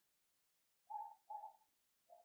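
Two short, faint coos from a dove, about a second in.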